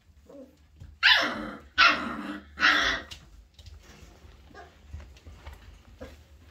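A dog barks three times in quick succession, starting about a second in; each bark is loud and lasts about half a second.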